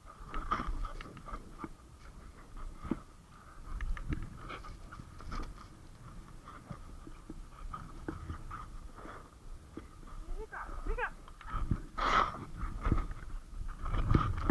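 Skiing through deep powder, heard from a camera on the skier: the rush of skis through snow and wind on the microphone, uneven and gusty, with a person's voice and breathing breaking in now and then and a louder burst near the end.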